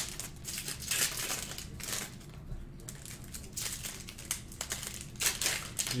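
Crinkling and rustling of trading-card pack wrappers and cards being handled: a string of irregular small crackles and clicks, quieter for a moment partway through.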